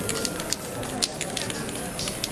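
Aerosol spray-paint cans giving several short hissing bursts onto a poster.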